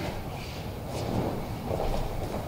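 Quiet rustling and soft low thuds of a person rolling backward on a padded mat, the training uniform and hakama brushing against the mat.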